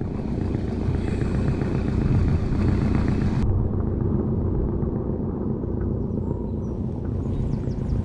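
Wind buffeting the microphone over open water: a steady, loud low rumble. The higher hiss above it drops away abruptly about three and a half seconds in.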